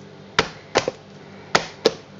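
Four sharp knocks of hard objects struck together, spaced about a third to half a second apart, over a faint steady hum.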